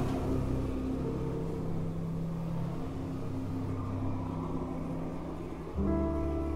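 A low, steady drone of held tones that shift in pitch every second or two. A louder low musical tone comes in near the end.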